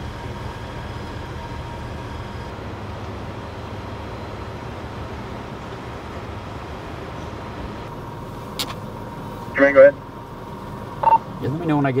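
Steady low hum and hiss of a pickup's engine idling, with a faint steady tone in it. About ten seconds in comes a loud short radio chirp, then a brief beep just before a voice comes over the radio.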